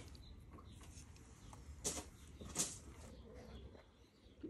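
Faint rustle of hands pressing loose potting compost down around a seedling in a terracotta pot, with two short, sharp sounds a little after halfway.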